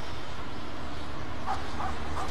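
A dog barking twice, two short faint barks in the second half, over a steady low rumble.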